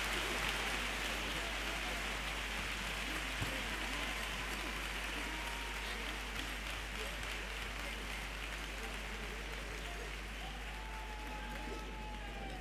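Large theatre audience applauding, the clapping slowly dying down.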